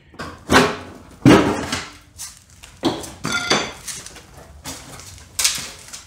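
Loose metal front fender of a 3rd gen Toyota 4Runner clanking and scraping as it is worked free past the antenna assembly and lifted off: a run of sharp metallic knocks, about six in a few seconds, the loudest about a second in.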